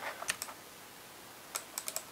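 Typing on a computer keyboard: a few keystrokes at the start, a short pause, then a quick run of keystrokes near the end.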